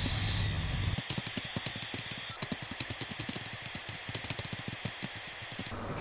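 Rapid, irregular clicking, several clicks a second, over a faint steady hiss, starting about a second in and stopping just before the end.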